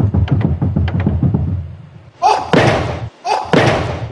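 Background music with a steady low beat fades out. Then come loud, breathy, forceful exhalations, a man's grunts of effort, about once a second.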